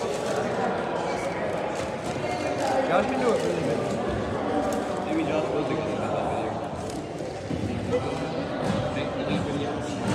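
Indistinct chatter of players and spectators echoing in a gymnasium during a stoppage in play, with scattered light knocks and clicks.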